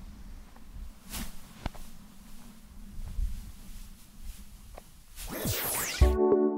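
Faint outdoor ambience with a low steady hum and a few soft clicks, then near the end a loud swoosh whose pitch falls steeply: an editing transition effect.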